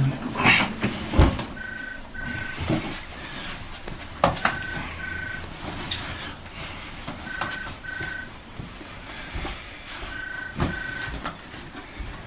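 Telephone ringing with a double ring: four pairs of short rings, about three seconds apart. Under it are rustling and a few soft knocks.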